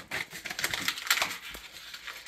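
Small laser-cut wooden pieces and paper being handled on a sheet: a quick run of light clicks, taps and rustles.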